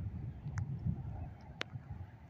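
Quiet outdoor background: a faint low rumble with two short clicks, about half a second and a second and a half in.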